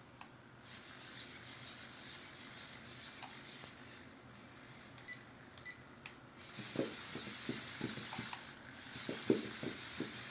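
Capers II hexapod robot walking quickly on carpet: its servos buzz and its feet brush and scrape the carpet. The sound gets louder partway through, with a run of quick taps as the feet come down.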